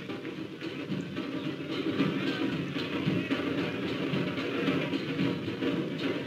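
Hosay procession drumming: large drums beating continuously, heard through an old documentary film's soundtrack.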